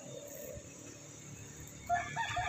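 Quiet outdoor background; near the end a rooster starts to crow.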